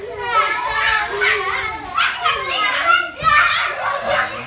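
A group of young children playing together, their high-pitched voices shouting and chattering over one another.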